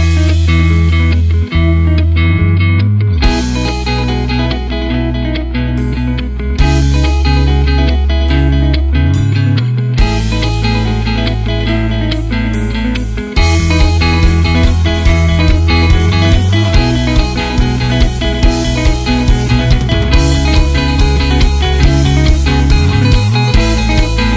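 Instrumental break in a rock song, carried by guitar over sustained bass notes. About 13 seconds in it gets louder and busier, with a regular drum beat.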